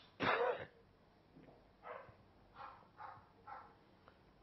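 A man clearing his throat and coughing into a handkerchief: one louder burst just after the start, then four fainter short ones.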